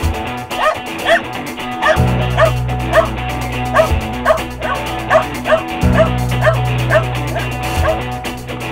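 Puli barking steadily at a spot under a pallet, short sharp barks about two a second: a rubble-search rescue dog's bark alert. Guitar-led rock music plays underneath.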